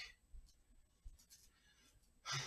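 Near silence: room tone with a few faint short clicks.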